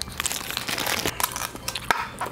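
Paper napkin and plastic crinkling in the hands, a quick irregular run of crackles and rustles.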